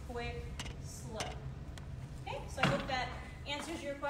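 Boot heels stepping on a hardwood dance floor: a few sharp knocks, the loudest about two-thirds of the way in, under indistinct speech.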